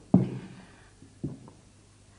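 Two short knocks, a louder one just after the start and a quieter one about a second later: glassware being handled as a cognac is poured.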